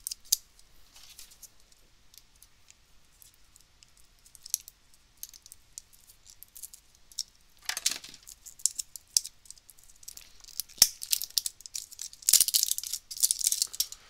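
AAA batteries being handled: scattered light clicks and taps as they knock together and against the meter's case, with a short rustle a little past halfway and a longer plastic-wrapper crinkle near the end.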